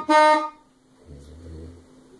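A saxophone note, held for about half a second and then stopped, followed by a quiet pause with a faint low sound.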